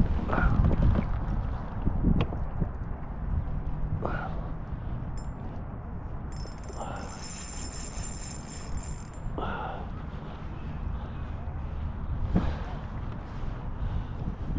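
Wind noise on the microphone over rippling water, a steady low rush, with short faint sounds every few seconds.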